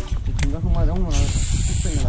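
Muffled voices over a low, uneven rumble, with a steady hiss through roughly the second half.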